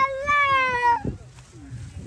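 A person's long, high-pitched drawn-out shout, lasting about a second and falling slightly in pitch, cheering a kite cut.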